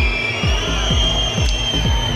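Electronic music with a steady, fast kick-drum beat, about four beats a second, under long held high synth tones.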